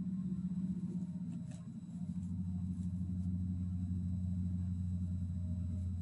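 A steady low hum with two low tones, the lower one growing stronger about two seconds in, and a few faint ticks over it.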